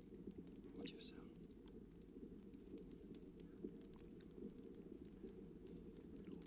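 Near silence: a low steady background hum with scattered faint clicks, and a brief faint voice about a second in.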